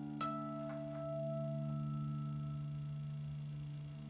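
Acoustic guitar chord ringing out, with a single high note plucked just after the start that rings on and slowly fades, and a second faint pluck a moment later.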